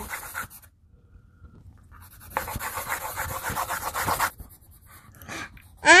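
Coloured pencil scribbling rapidly back and forth on paper on a clipboard. A scratchy rustle lasts about two seconds in the middle, with fainter single strokes around it.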